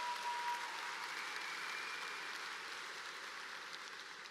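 Audience applauding, a steady clapping that slowly eases off toward the end.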